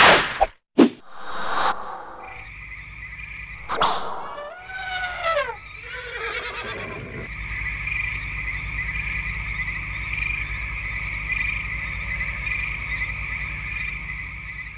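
End-screen sound effects: a sharp hit at the start, a few whooshes and a falling, wobbling glide, then from about seven seconds a steady chorus of frog-like croaks and trills repeating over a low rumble.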